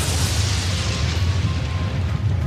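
Thunder sound effect: a loud, deep rumble of thunder, its crackling upper part slowly fading while the low roll holds steady.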